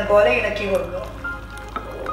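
A pot of duck curry sizzling, with a singing voice in background music over the first second.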